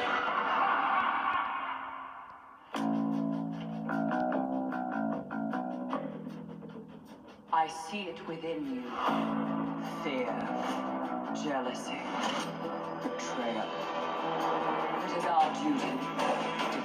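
Movie trailer soundtrack heard through cinema speakers: a dense, loud passage fades away over the first two or three seconds, then plucked guitar music starts suddenly and carries on, with a line or two of dialogue over it.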